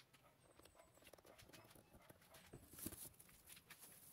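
Near silence with a few faint taps and knocks as items in a car's trunk are handled, a little louder about three seconds in.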